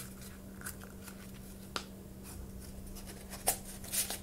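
Empty cardboard toilet-paper tubes being squeezed and pushed one inside another by hand: faint scraping and rustling of cardboard with a few short sharp clicks, the loudest about three and a half seconds in.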